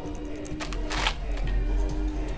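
Plastic bottle crackling and crunching as a young American bulldog chews and noses at it: a few sharp crunches, the loudest about a second in.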